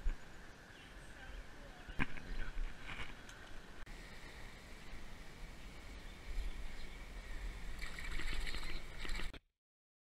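Faint water sloshing and lapping, growing louder in the last few seconds, with one sharp click about two seconds in; the sound cuts off abruptly shortly before the end.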